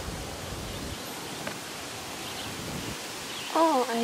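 Outdoor woodland ambience: a steady, even hiss, with a low rumble in the first second. A woman's voice starts near the end.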